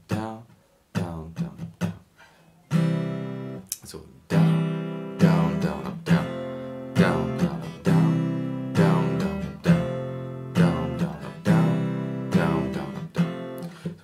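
Steel-string acoustic guitar strummed in a down-down-down-up pattern through a chord progression. A few separate strums come first, and about three seconds in it settles into a steady rhythm.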